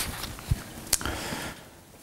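Sheets of paper being handled and held up: light rustling with two short clicks, about half a second and about a second in.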